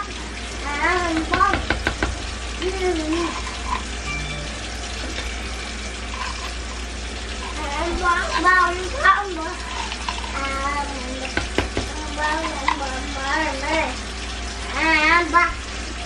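Vegetables sizzling steadily in a pot on the stove, with a high-pitched voice coming in and out in short phrases over it.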